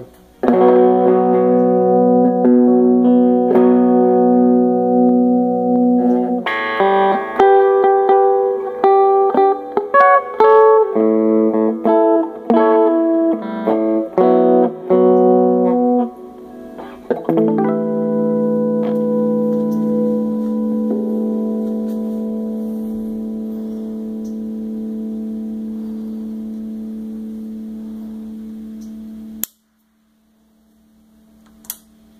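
Electric guitar played through a Gorilla GG-110 solid-state combo amp with its Tube Crunch circuit switched on: strummed chords and changing notes, then one long held chord that slowly fades and is cut off suddenly near the end.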